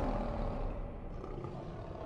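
A lion-roar sound effect in a channel logo sting, trailing off as it slowly fades.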